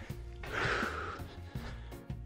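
Background music, with a man's forceful breath out, about half a second long, during jumping lunges: the hard breathing of a plyometric set.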